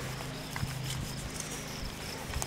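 A shovel blade cutting into grassy soil, with a couple of soft thuds, over a steady low hum and insects chirping.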